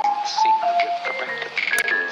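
Background music: an electronic track with a synth melody stepping between held notes.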